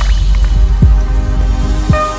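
Logo-animation sound design: three deep liquid drip-and-splash hits, each dropping in pitch, over a sustained musical drone.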